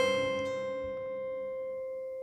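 Acoustic guitar chord left ringing after a hard strum, its notes slowly fading: one of the sparse final chords that close the song.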